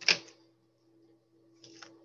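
Scissors clicking and knocking as their point is worked into glued cardstock to make a hole: one sharp click just after the start, then a quieter pair of clicks near the end.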